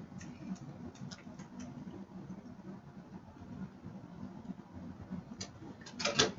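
Faint clicks of graphing-calculator keys being pressed as a function is typed in: a quick run in the first second and a half, then two more near the end, over a low steady hum.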